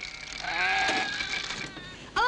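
A sheep bleating: one long, slightly wavering bleat starting about half a second in and lasting about a second.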